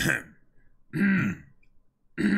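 A man clearing his throat: a short burst right at the start and a louder one about a second in.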